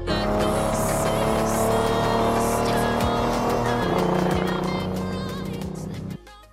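Ferrari 250 LM's V12 engine pulling on a race track, its pitch rising steadily, then dropping at a gear change about four seconds in. Music plays under it.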